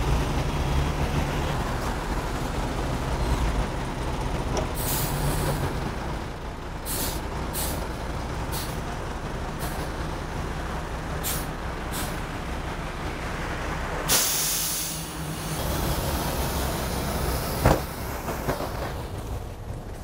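Low-floor city bus idling at the stop with its door open, its engine a steady low hum. Pneumatic air releases hiss over it: several short sharp hisses in the middle and one longer, louder hiss about fourteen seconds in, followed by a sharp knock a few seconds later.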